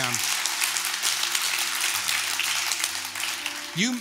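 Congregation applauding steadily in a large auditorium, a dense even patter of many hands.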